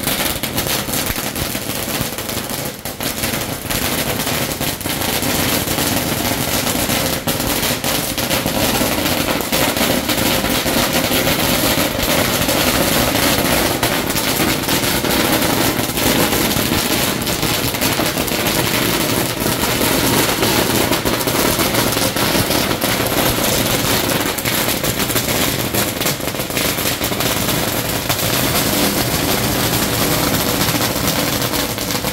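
A long string of firecrackers going off in a continuous, rapid crackle of bangs, dipping briefly about two to three seconds in.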